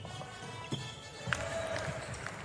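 A basketball bouncing on a hardwood court during play: a few separate sharp bounces, about a second in and again near the middle, over faint background sound.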